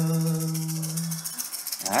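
A singer holds one long low note that ends about a second in, over a steady, fast shaken rattle; the next sung phrase begins near the end.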